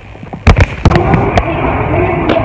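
Two loud, sharp knocks about half a second apart, then a smaller one, from a handheld phone's microphone being bumped and rubbed as it is carried.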